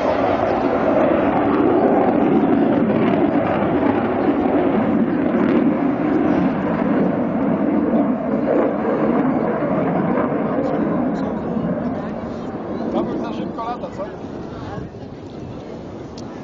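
Two RD-33 turbofan jet engines of a MiG-29 fighter making a low, loud rumbling roar as it flies past, fading over the last few seconds as it moves away.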